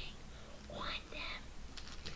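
A person's voice whispering a couple of short syllables about a second in, followed by a few faint clicks near the end.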